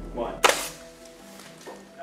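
Air-powered blood cannon firing once: a sharp burst of released compressed air with a short hiss as it blasts thick fake blood out of the tube.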